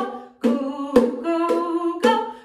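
A woman singing sustained 'oo' notes of a children's song. Each note is marked by a sharp percussive beat, the beats about a second apart.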